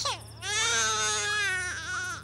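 A baby crying: one long drawn-out wail, falling slightly in pitch, with a short rising catch near the end.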